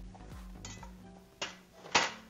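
Pots and kitchenware being shifted on a counter: a sharp knock about one and a half seconds in, then a louder clatter just before the end.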